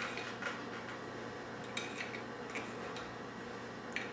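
Light clicks and taps of tile calendar blocks being lifted out of their stand and set back in, coming in a few small clusters.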